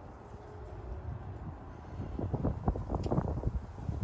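Wind rumbling on the phone's microphone, with a run of short, irregular rustles and knocks in the second half as the phone is handled.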